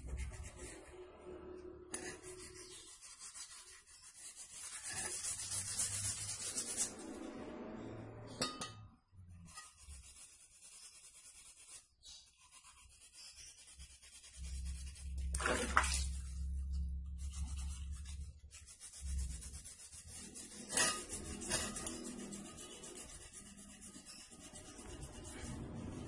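Hand rubbing along the barrel of a Canon air rifle: scratchy rubbing strokes in stretches with short pauses, broken by a few sharp knocks, the loudest about two-thirds of the way through.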